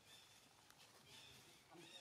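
Faint, short, high-pitched squeals of a macaque monkey, about three in quick succession.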